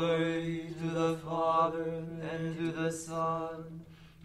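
Liturgical psalm chanting: sung words held on one steady reciting note throughout, starting suddenly at the beginning.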